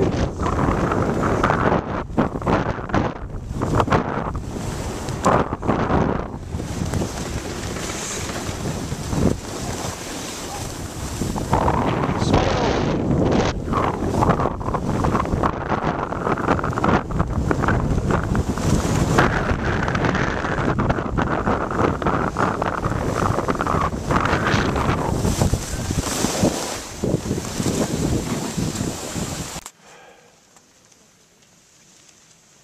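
Wind buffeting the microphone of a hand-held camera as the filmer skis downhill, gusting loud and uneven, with skis scraping on the snow. It cuts off suddenly near the end.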